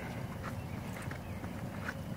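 A few soft footsteps on a dirt garden path, faint against low outdoor background noise.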